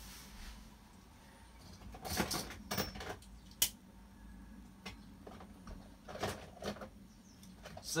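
A scattering of short, light clicks and knocks, about seven over several seconds, from small plastic Beyblade parts being handled and fitted together.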